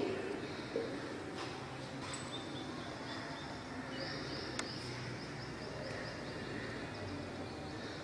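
Low room noise with a few faint light taps as a clear plastic ruler is handled and set against the potentiometer wire beside the jockey.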